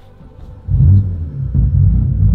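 Car engine starting about two-thirds of a second in: a sudden loud low rumble that flares, dips and settles into a steady idle.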